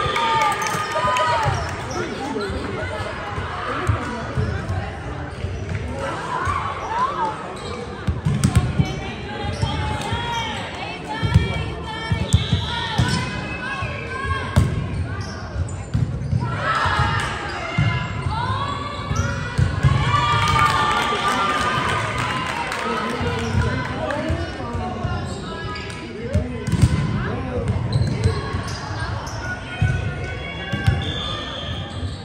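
Indoor volleyball play echoing in a large gym: repeated thuds of the ball being hit and landing, sneakers squeaking on the hardwood floor, and players calling out and shouting. Near the start there is a brief cheer and clapping as a point is won.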